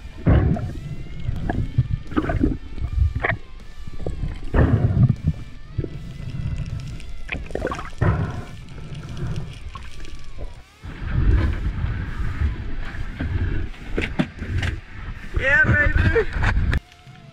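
Water sloshing and rushing around an underwater action camera in irregular surges, with quiet background music.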